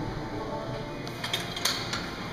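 Gym room noise with faint background music, and a few short clicks or knocks a little after a second in, the kind made by handling weight-machine parts.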